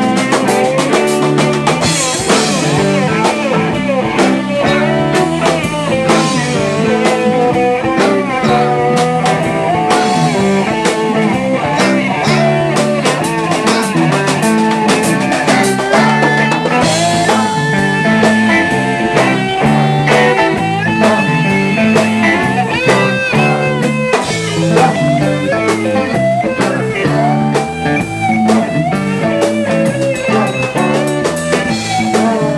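Live blues-rock band playing an instrumental break: a lead electric guitar plays bending, gliding lines over bass guitar and a drum kit keeping a steady beat.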